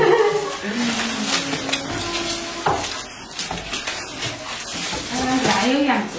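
Goats feeding on a pile of cut green leaves on a concrete floor: scattered rustling and crunching of stalks, with short clicks throughout.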